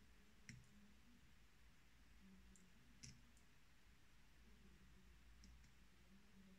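Near silence with a few faint, sharp clicks of a small blade tip touching a metal fountain pen nib as it is worked; the two clearest come about half a second and three seconds in.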